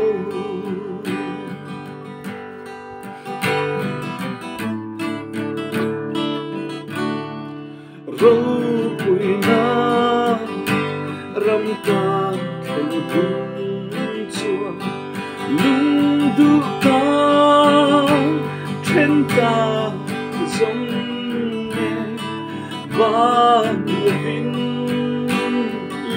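A man singing while strumming an acoustic guitar. The start is quieter and mostly guitar, and the voice comes back strongly about eight seconds in.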